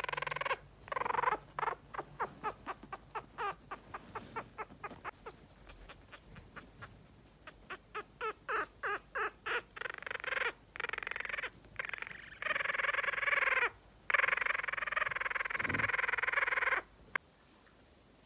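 Yorkshire terrier puppy growling in a tiny chattering voice, a quick string of short sounds about three a second, then two longer drawn-out growls near the end; he makes these sounds when he is angry.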